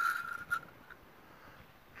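Metal shotgun parts sliding together during reassembly: a faint, thin scraping squeal that ends in a small click about half a second in, then only quiet background.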